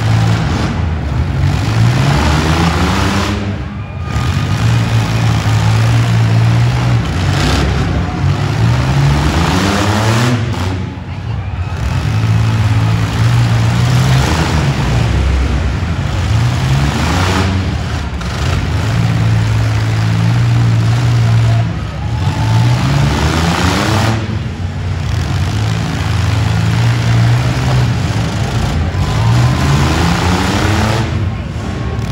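Demolition derby vans and pickup trucks with their engines revving hard, the pitch climbing again and again every several seconds over the steady running of many engines at once.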